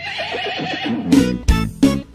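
A horse whinnies with a wavering, falling call, followed by several heavy drum hits as music comes in.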